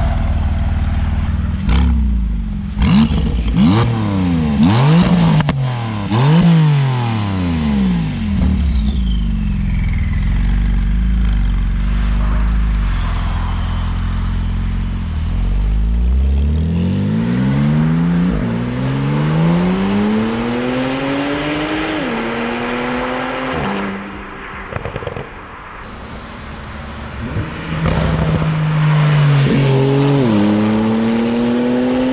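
Porsche 991.2 Turbo S twin-turbo flat-six through a catless Techart exhaust: revved several times in quick succession with sharp crackles, then idling. It then pulls away, rising in pitch through gears with clear drops at the upshifts, fades into the distance, and comes back louder and rising in pitch near the end.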